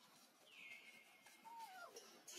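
Faint, thin calls of an infant macaque: a high whistle-like note held for most of a second, then a short call falling in pitch near the end.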